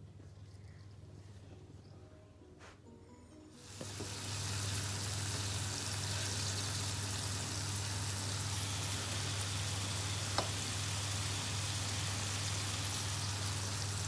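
Minced beef and carrots sizzling in a frying pan on the hob: a steady hiss over a low hum, starting abruptly about four seconds in after a quiet stretch.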